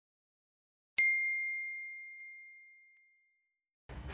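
A single bell-like 'ding' sound effect: one clear, high ring about a second in that fades out over about two seconds, the notification-bell chime of a subscribe animation.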